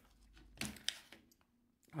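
Faint handling of small camera gear being set down in a drawer: a soft rustle, then one sharp click about a second in.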